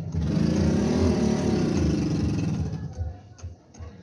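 A motor vehicle's engine passes close by. Its pitch rises and then falls, and it fades out after about three seconds. Under it are repeated soft low knocks of a hammer tamping clay.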